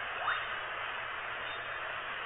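Steady background hiss, like static from a low-quality recording, with one brief rising tone about a quarter of a second in.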